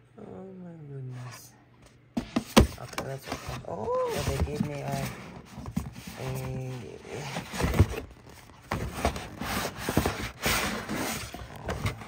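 A book being slid out of a stiff paper envelope, with the paper rustling and scraping and a few sharp crinkles. A drawn-out, falling wordless 'ooh' comes near the start, and two more short wordless voice sounds come in the middle.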